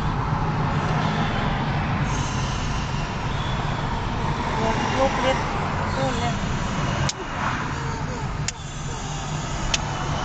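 Steady road and engine noise inside a moving car's cabin, with three sharp clicks in the second half.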